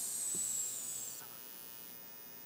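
A man's drawn-out hiss, the final "s" of "mas" held for about a second with a faint whistle falling slightly in pitch, stopping about a second in. After it, a quiet steady electrical hum of the sound system.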